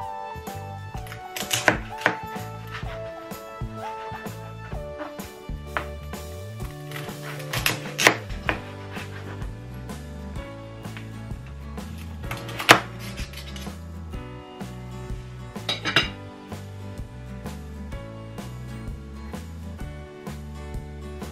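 A knife cutting through crisp pork belly crackling, with sharp crunches and knocks of the blade on the cutting board in four bursts a few seconds apart. Background music plays throughout.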